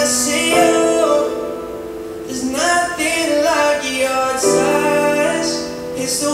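Live pop performance: a high male voice singing long held notes that slide between pitches, over sustained keyboard chords from a Nord keyboard.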